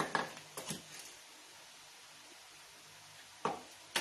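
A few light clicks and taps from small craft materials being handled on a plastic cutting mat: a cluster in the first second, then faint room tone, then two more clicks near the end.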